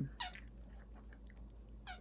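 A small terrier rolling on its back and mouthing a plush sloth chew toy: two brief falling squeaks, one just after the start and one near the end, over faint soft clicks and rustles.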